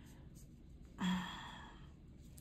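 A woman's hesitant "uh" about a second in, drawn out into a breathy sigh that fades away.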